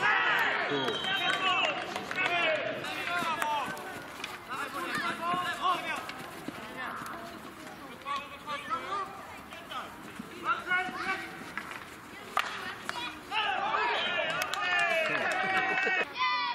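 Several voices shouting and calling across an outdoor field hockey pitch, loudest at the start and again near the end, with a few sharp knocks in between.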